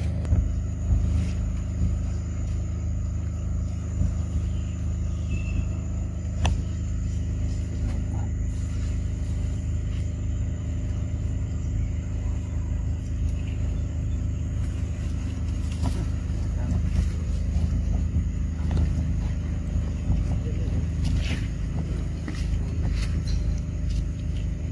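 A steady low mechanical drone, like an engine running, with scattered faint clicks.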